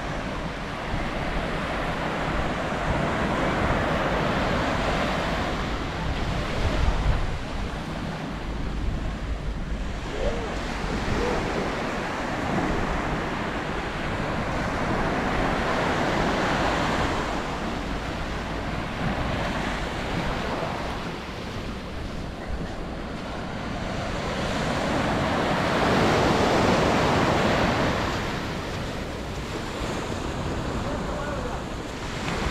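Small waves breaking and washing up a sandy beach, the surf swelling and fading slowly, loudest near the end. Wind buffets the microphone in low rumbles, most strongly about a quarter of the way in.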